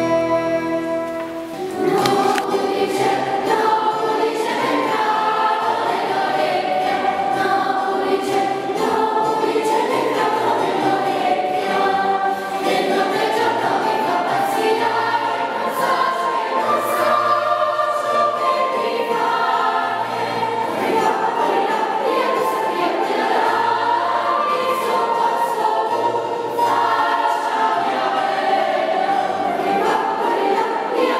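A flute finishes a short falling phrase, then a children's treble choir comes in about two seconds in and sings a hymn-like song.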